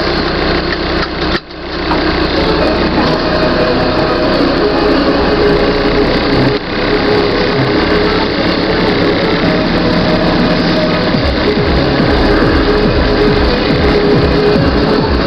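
Land Rover Defender 90 engine running at idle, with music playing over it. The sound dips briefly about one and a half seconds in.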